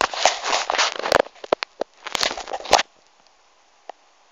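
Close handling noise: fingers rubbing and scraping against the phone near its microphone in two loud bursts of rustling with sharp clicks, one in the first second and another about two seconds in.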